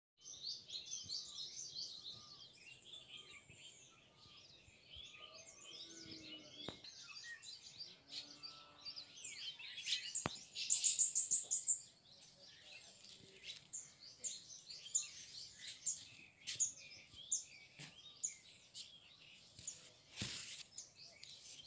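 Several small birds chirping and singing in a dense, overlapping chorus of short high notes. About halfway through, one bird gives a louder run of fast repeated high calls lasting a couple of seconds.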